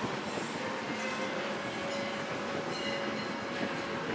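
Steady airport-terminal background noise: a continuous rumble and hiss with a few faint short tones in it and no clear single event.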